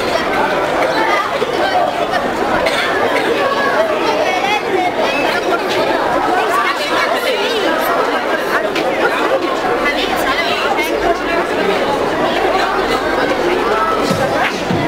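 Many children's voices chattering and talking over one another, with no single clear speaker.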